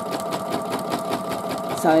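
Singer Futura embroidery machine sewing out a line of stitching in the hoop. The motor whine is steady and the needle strokes make a rapid, even ticking.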